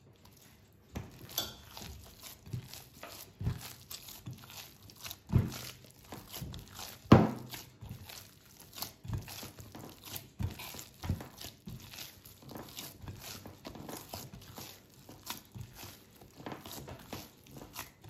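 Hands kneading wet pizza dough in a glass mixing bowl, working in the olive oil: irregular squelches and slaps, with a few louder thumps, the loudest about seven seconds in.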